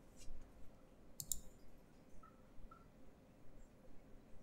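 Faint key presses on a Lenovo ThinkPad E15 laptop keyboard as a short name is typed, with a brief cluster of sharper clicks a little over a second in.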